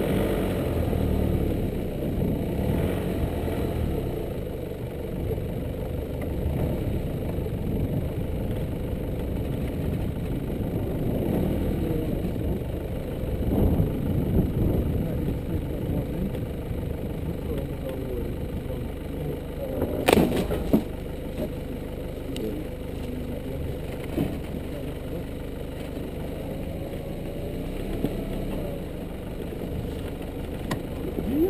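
Nissan Navara D22 4WD ute engine running at low speed as it creeps over a rough dirt track, with a sharp knock about two-thirds of the way through.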